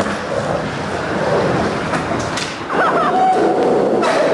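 Skateboard wheels rolling on a vert ramp: a steady rolling rumble with a couple of sharp knocks about two seconds in, and a brief held tone near the end.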